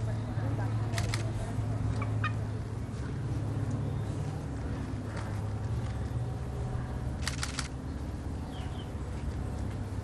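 A washed hen making a few short, sharp clucking sounds while being rolled up in a towel to dry, over a steady low hum.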